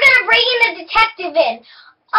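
A girl's voice, breaking off about one and a half seconds in.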